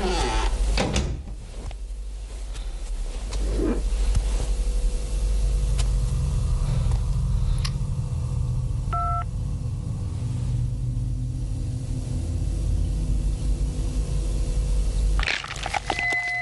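A low, steady rumbling drone of film sound design, with a few soft rustles early on and a short electronic phone beep about nine seconds in.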